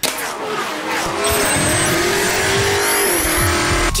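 A racing-car engine at high revs cuts in suddenly. Its pitch climbs slightly and then falls away, as in a pass-by, under a dense hiss of noise.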